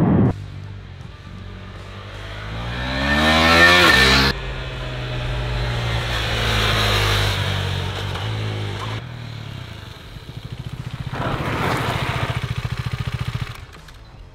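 KTM 390 Duke's single-cylinder engine revving up under acceleration, rising in pitch for about four seconds before breaking off sharply, then running more steadily. Near the end it grows louder again with a fast pulsing beat.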